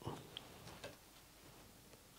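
A few faint snips of small fly-tying scissors cutting hackle fibres on a dry fly, all in the first second or so.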